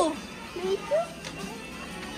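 Speech only: the tail of a voice, then a child's two short vocal sounds about a second in, over a low shop background.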